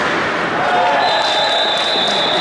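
Players shouting on an ice rink, with knocks of bandy sticks and ball on the ice, in a large, echoing arena.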